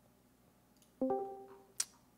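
About a second in, a single short plucked, guitar-like note with a sharp attack sounds and fades out in under a second. A single sharp click follows near the end.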